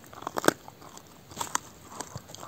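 A dog chewing a raw beef brisket bone, its teeth crunching it in a few sharp cracks: the loudest about half a second in, two more around a second and a half in.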